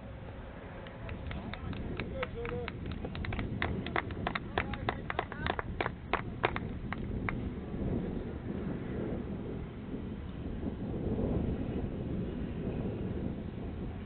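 A quick, irregular run of sharp clicks, about four a second, lasting several seconds and stopping about halfway through, over a steady low rumble of wind on the microphone.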